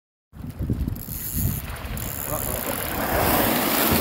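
Wind buffeting a phone microphone on a boat over open sea, with a rush of water and spray growing louder toward the end as a whale breaks the surface right beside the boat.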